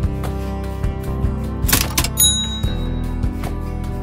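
Cash register "cha-ching" sound effect about two seconds in: a short rattle followed by a bright ringing bell, over background guitar music.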